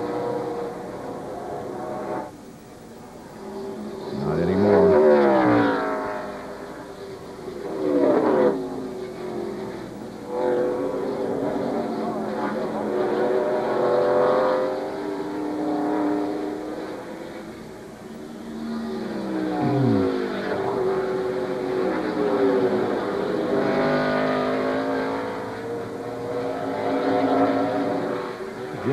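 NASCAR Winston Cup stock cars' V8 engines at racing speed, two cars running nose to tail through a road course. The engine note climbs and drops through the gears and as they go by, loudest about five and eight seconds in.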